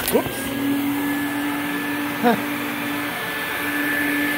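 Quantum QX 8002 upright vacuum cleaner running steadily on carpet: a constant rush of airflow with a thin, steady high whine and a low hum from the motor.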